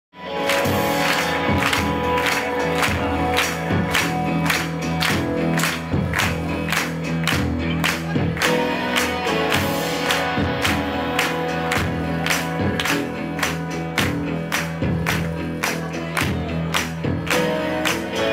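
Live pop band playing a song, with a steady drum beat over sustained chords; the music starts suddenly at the very beginning.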